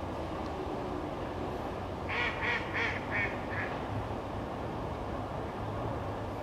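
A duck quacking five times in quick succession about two seconds in, the last quack weaker, over a steady low background hum.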